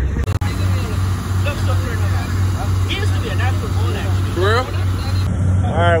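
Boat engine running with a steady low drone, under people talking in the background.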